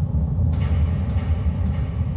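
A loud, low rumbling noise that starts suddenly and then holds steady, with a fainter hiss above it.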